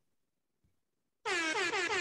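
Air horn sound effect played from a soundboard: after a second of near silence, one long horn tone with many overtones comes in suddenly, its pitch dipping slightly at the start and then holding.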